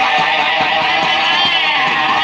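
Loud yosakoi dance music with guitar, playing steadily.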